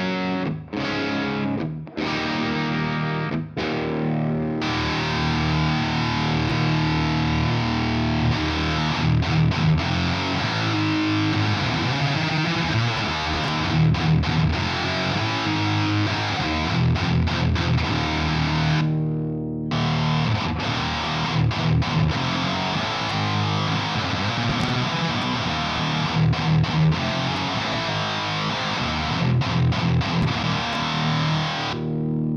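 Electric guitar played through amp and pedals: a few clean chords with short gaps at first, then, about four and a half seconds in, heavily distorted low riffs in the saw-edged 'chainsaw' tone of a Boss HM-2-style Swedish death metal pedal. The riffing breaks off briefly about two thirds of the way through and then resumes.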